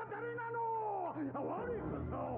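An anime character's voice in Japanese delivering a theatrical, drawn-out line; one held sound arches up and then down in pitch. It comes from the episode's soundtrack, so it sounds thin and quieter than live speech.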